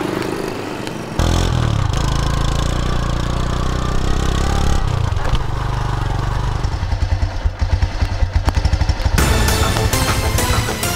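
A small commuter motorcycle engine running, under a background music score.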